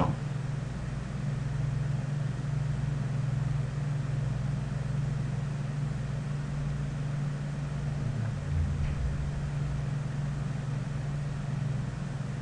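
Steady low hum over faint even background noise, with no distinct events.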